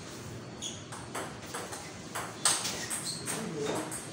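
Table tennis ball hit back and forth in a doubles rally: a quick series of sharp clicks of the ball on rubber bats and the table, the loudest about halfway through.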